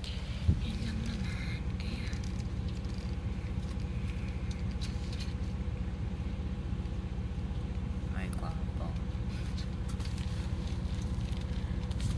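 Steady low rumble of a moving road vehicle heard from inside its cabin, with a single sharp click about half a second in.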